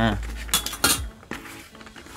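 A steel ruler clinking as it is put down: two sharp metallic clinks about a third of a second apart, roughly half a second in, then a fainter tap.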